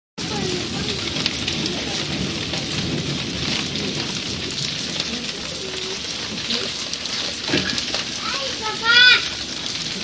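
Steady rain-like hiss of water overflowing from a rooftop water tank, pouring and splashing down the block wall; the overflow is the kind the uploader blames on unchecked tanks and pumps. Voices in the background, with one loud call about nine seconds in.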